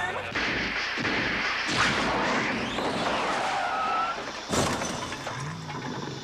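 Dramatic crash sound effects: a dense noisy rush with a rising sweep, then one sharp crash with shattering about four and a half seconds in.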